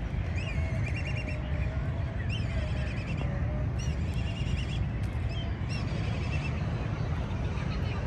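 Black kites calling: three high-pitched calls in the first five seconds, each a rising note that breaks into a quick run of repeated notes, over a steady low rumble.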